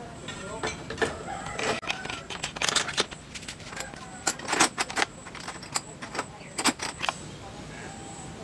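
Sharp metallic clicks and clinks as a mountain bike's rear wheel, with its cassette and disc rotor, is fitted into the frame's rear dropouts and the axle is pushed through. The knocks come irregularly, the loudest around the middle.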